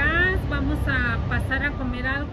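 A woman's voice speaking, with words that cannot be made out, over a steady low rumble.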